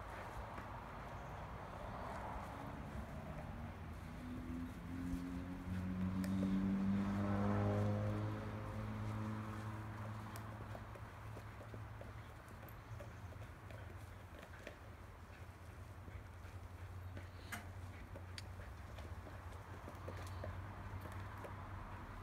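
Dog batting and nosing a ball across grass, with scattered soft knocks and clicks from its paws and the ball. A droning hum swells about five seconds in, falls in pitch and fades by about ten seconds.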